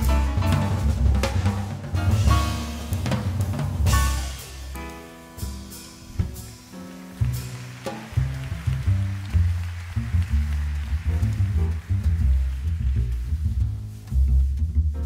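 Small jazz group playing live: drum kit, grand piano and upright bass. Busy drum and cymbal strokes for the first few seconds give way to held piano chords, then the upright bass walks low notes under a ringing cymbal wash.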